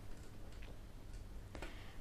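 A quiet pause: faint steady hiss and low hum, with three soft clicks spread through it.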